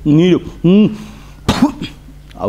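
A man's voice making two short vocal sounds, then a single short cough about a second and a half in.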